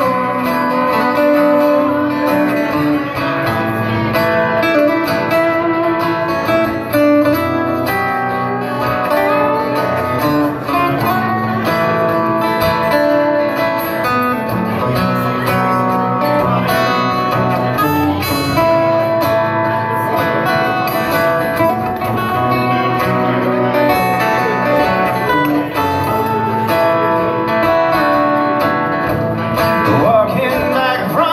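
Acoustic guitars playing an instrumental passage, plucked and strummed, with no singing.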